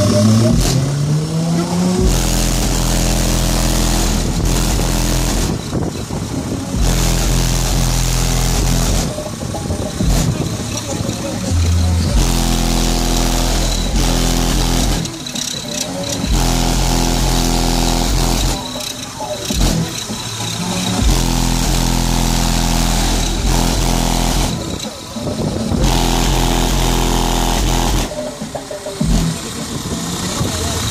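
Loud bass-heavy music from a competition car audio system's subwoofers. After a short gliding pitch sweep at the start, deep held bass notes cut in and out every few seconds.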